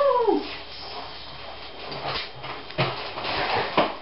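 A high, muffled whimper that slides down in pitch, then rustling and scuffling of hands and clothing with a few sharp knocks.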